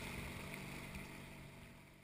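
Water rushing past the bows of a moving sailboat, with some wind on the microphone: a steady noise that fades out over the second half.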